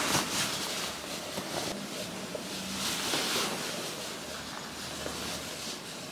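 Clothing rustling and brushing as a jumpsuit is handled and put on, a soft uneven swishing that swells a little midway.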